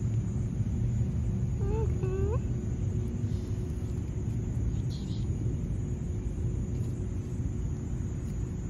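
Steady low outdoor rumble, with one brief rising vocal sound about two seconds in.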